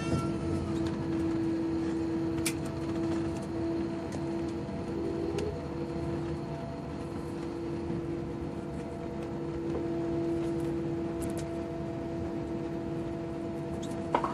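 Steady drone inside an airliner cabin while taxiing after landing: jet engines at idle and cabin air noise, with one strong steady low hum and a few faint clicks.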